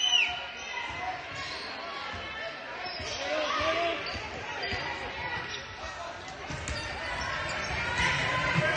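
Basketball being dribbled on a hardwood gym floor, with sneakers squeaking and players' and spectators' voices in an echoing gym.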